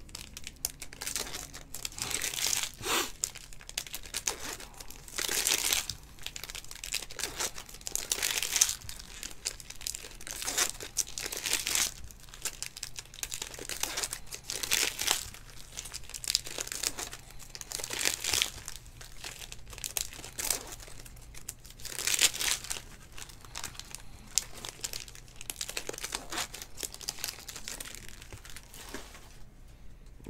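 Foil wrappers of trading-card packs being torn open and crumpled by hand, in irregular bursts of crackly rustling.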